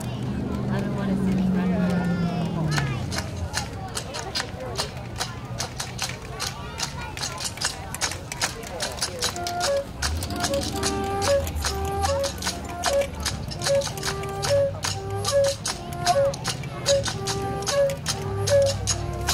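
Steel drum band playing: a steady run of quick drum and percussion strikes, joined about ten seconds in by the steel pans with a bouncing melody of short, repeated ringing notes.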